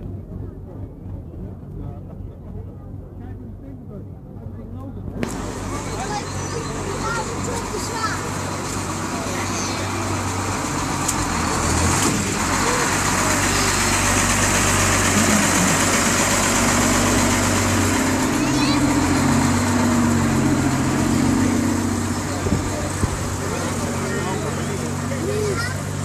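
Road vehicle engines running as they pass in a parade, a low steady hum with crowd voices over it. The sound turns suddenly fuller about five seconds in and grows louder until about halfway, then holds.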